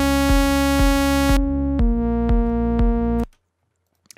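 Serum software synth on its default init patch, a plain buzzy sawtooth tone, holding one note and then a slightly lower one, each for about a second and a half, over a kick drum beating about twice a second. It is heard as a bare starting sound, too simple for a lead pad, and it stops a little after three seconds in.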